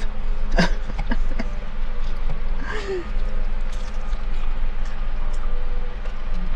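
A woman's short wordless mouth and throat sounds as she eats and thinks: a brief 'mm' about half a second in and a falling hum around three seconds. A steady low background hum inside a car runs under them.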